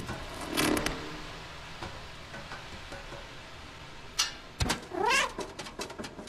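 A cat meowing twice: a short call about half a second in, and a longer call near the end that wavers up and down in pitch. A few sharp knocks come just before the second call.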